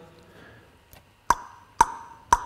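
The reverb tail of a voice fades away, then two sharp taps sound about half a second apart. Each tap rings briefly through a short room reverb.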